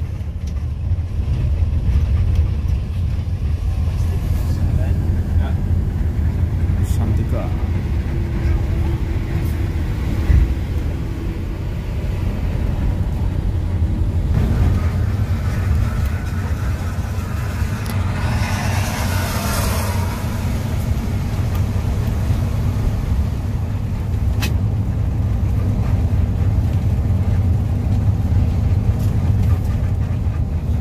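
Steady low drone of an intercity coach's engine and tyres at highway speed, heard from inside the cabin. About halfway through, a rushing noise swells and fades over a few seconds, with a few faint clicks.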